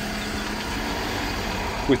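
Steady background noise: an even hiss with a faint low hum under it, holding one level throughout.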